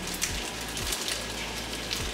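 Food frying in a pan: a steady sizzling hiss with a few small pops.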